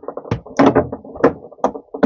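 A small plastic HDMI stick decoder being pushed into the HDMI socket on the back of a TV: several sharp clicks and knocks of plastic against the socket and the TV's plastic back panel.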